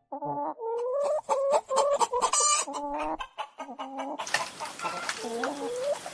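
Chickens clucking: a string of short, separate calls. An even hiss of background noise comes in about four seconds in.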